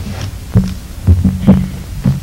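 Several dull knocks and bumps against a wooden podium, picked up close by its microphone as someone handles something behind it, over a steady low electrical hum.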